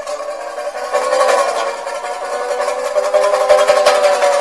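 Traditional Chinese instrumental music on a plucked string instrument, played as a quick, dense stream of notes over held tones, getting louder about a second in.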